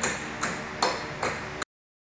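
Four light clicks or taps, roughly two a second, each with a brief faint ring, cut off by dead silence where the recording stops.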